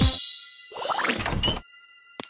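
A bright ding that keeps ringing as a steady tone, with a cartoon door creaking open about a second in.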